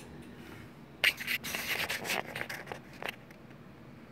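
Rubbing and scraping of hands moving a soft tape measure over a chunky yarn blanket, starting about a second in and dying away about three seconds in, with a few light clicks.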